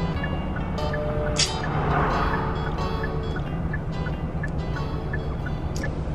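Music playing on the car stereo inside the car's cabin, over a low steady hum of the engine and road.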